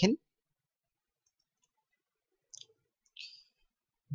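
Two faint computer-mouse clicks, the second a little longer, about two and a half and three seconds in, with near silence around them.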